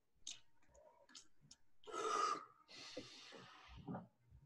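A wine taster drawing air in hard through the mouth after a sip, to feel the alcohol's burn in the throat: a louder breath about two seconds in, then a longer, fainter one.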